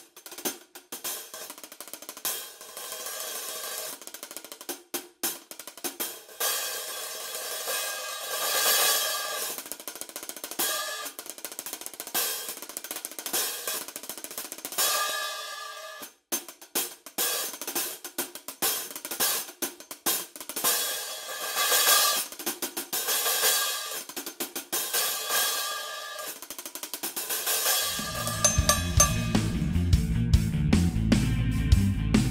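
Orion MS 12-inch hi-hat cymbals played with drumsticks, heard through the camera's own microphone: crisp closed ticks mixed with washy, ringing open strokes in a steady groove, with a short stop about halfway. Near the end, louder music with a deep low end comes in.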